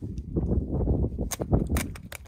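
Wind buffeting the microphone, with a few sharp clicks about one and a half seconds in as fingers tap the thin ice on a small rock-basin pool.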